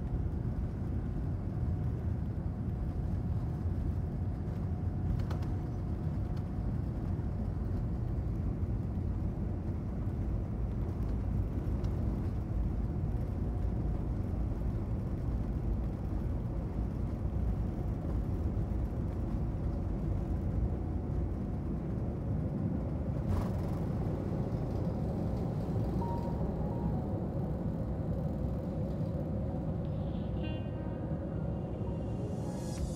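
Cabin noise of a Boeing 787-9 on its takeoff roll, heard at a window seat beside its Rolls-Royce Trent 1000 engine: a steady deep rumble of jet engines and wheels on the runway, with a faint high tone that fades out after about eight seconds. The aircraft lifts off near the end.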